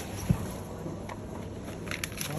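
A single dull thump about a third of a second in, then a few light clicks, from cordless mini chainsaw parts and packaging being handled and set down on a hard floor, over a steady low background hum.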